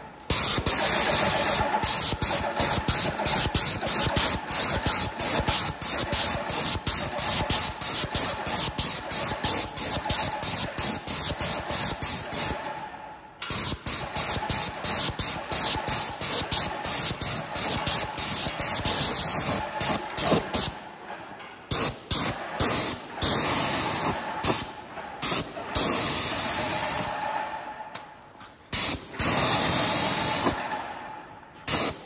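Graco GX21 airless paint sprayer spraying paint through its hand-held gun: a loud hiss that pulses rapidly. It breaks off briefly about 13 s in and stops and starts several times in the last third.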